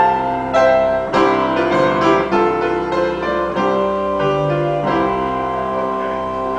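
Pipe organ and piano playing a piece together in chords with long held notes, closing on a sustained chord near the end.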